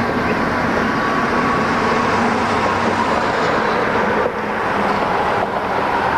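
Freight train cars rolling past: a steady loud rumble of steel wheels on rail, with a faint thin whine running through it.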